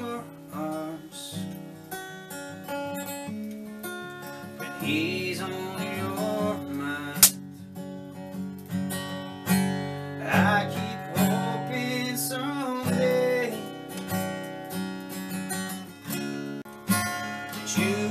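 Acoustic guitar strummed and picked live in a slow instrumental stretch between sung lines, with one sharp knock about seven seconds in.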